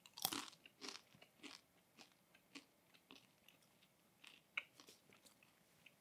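Matzah crunching: a few faint, irregular crunches as a piece of matzah topped with horseradish is broken and bitten, with one sharper crunch near the start and another about four and a half seconds in.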